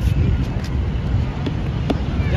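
Wind buffeting the microphone: a steady low rumble, with faint distant voices and one sharp click near the end.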